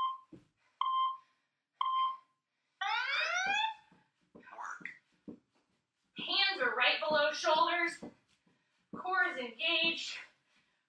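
Workout interval timer beeping three times a second apart, then sounding a longer rising tone about three seconds in, counting down to the start of a work interval. A woman's voice follows in the second half.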